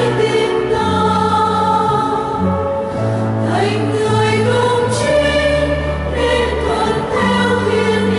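Mixed choir of women's and men's voices singing a Vietnamese Catholic hymn, over instrumental accompaniment that holds sustained low bass notes changing every second or two.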